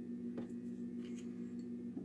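Quiet room tone: a steady low hum that stops near the end, with a faint click of a utensil on glassware about half a second in and a few fainter ticks after it.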